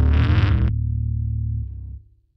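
Doom metal band ending a song: heavy distorted electric guitar and bass cut off less than a second in, leaving a low note ringing that fades out near the end.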